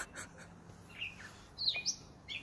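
Short, high songbird chirps: a brief falling note about a second in, then a quick sweeping chirp near the end.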